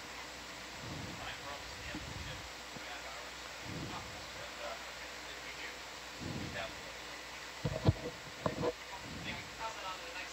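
Faint, indistinct voices in a ship's ROV control room, with a few sharp thumps a little under eight seconds in and again about half a second later.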